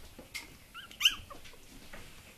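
A puppy whimpering: a faint short squeak, then a louder high yelp that rises and falls in pitch, about a second in.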